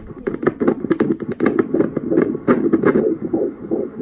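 Doppler audio from a Toshiba ultrasound scanner: the fetal heartbeat of an 18-week fetus, a rapid whooshing pulse coming about two to three times a second.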